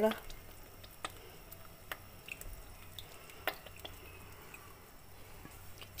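Soy-sauce broth boiling in an aluminium pot, with scattered pops and drips of liquid.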